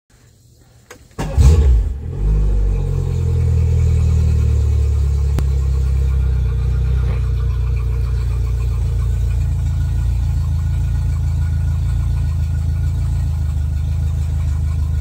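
Outboard motor of a 2007 Fisher Liberty 180 boat started with the key about a second in, catching after a very short crank and settling into a steady idle.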